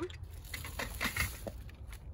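Soft rustling and a few light clicks of small plastic and cardboard items being handled and set down in a car trunk, over a steady low background rumble.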